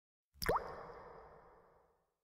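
A single water-drop 'plop' sound effect: a sudden pop with a quick upward pitch glide about half a second in, trailing off in a reverberant tail that fades over about a second and a half.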